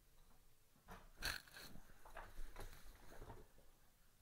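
Lid of a WeCreat Vista laser engraver being lowered and shut: a string of clicks and knocks, the loudest about a second in.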